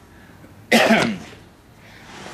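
A man coughing once, a short loud burst about two-thirds of a second in.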